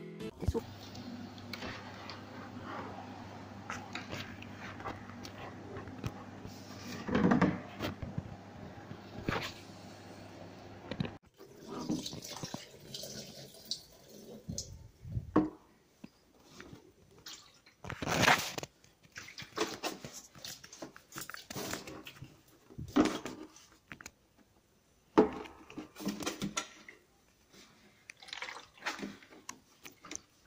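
Water being poured out of a condenser tumble dryer's plastic water-collection drawer, a steady splashing for about the first ten seconds. After that come irregular knocks and clatter as the plastic drawer is handled.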